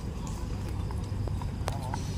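Outdoor ambience picked up by a phone microphone: a steady low rumble with a few light knocks in the second half and faint voices in the background.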